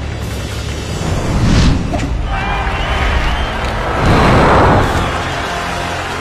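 Soundtrack music with loud whooshing effects, swelling about a second and a half in and again around four seconds in.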